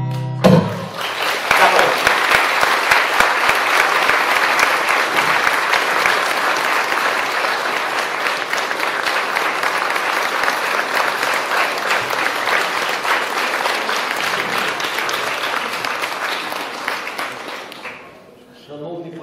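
An acoustic guitar's final chord rings for about half a second, then an audience applauds steadily, the clapping fading near the end.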